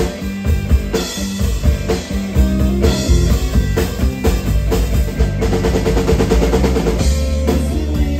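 Live rock band playing an instrumental passage on electric guitar, electric bass and drum kit. A fast drum fill runs a little past halfway, then the full band comes back in.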